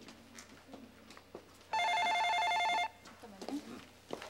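An office desk telephone rings once with a short electronic two-tone trill, lasting about a second, starting a little under two seconds in.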